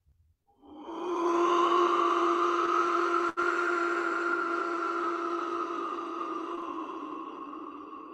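A small hand-held wind whistle blown in one long, breathy tone at a steady pitch. It swells in about a second in, fades slowly over several seconds, and breaks very briefly about three seconds in.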